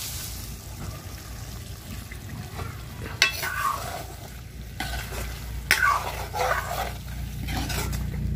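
A long steel ladle stirring and scraping through a fish curry in a karahi, with several scraping strokes from about three seconds in, over the steady sizzle of the curry frying as the fish is braised in its spices.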